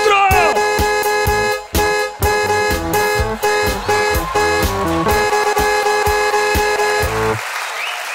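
Electronic keyboard playing a fast solo of short repeated stabs, played as a comic car-horn solo. The solo cuts off suddenly about seven seconds in, and audience applause follows.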